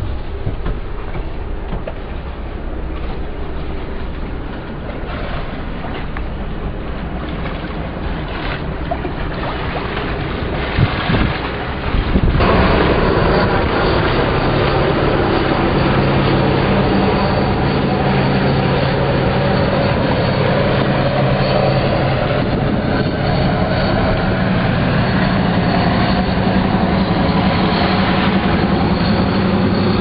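Steady drone of a boat's engines with a rushing noise. It grows louder about twelve seconds in and from then on holds a low, two-tone hum. A single sharp knock sounds right at the start.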